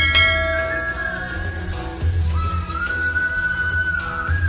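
Background instrumental music: a flute-like melody holding and gliding between long notes over a soft, pulsing low beat. A bell-like ding rings out at the very start and fades over about a second.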